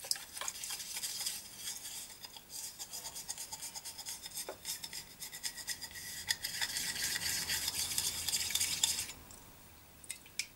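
Toothbrush bristles scrubbing the brass lid of a Trangia spirit burner in rapid back-and-forth strokes, a fast scratchy brushing that grows louder later on and stops abruptly near the end.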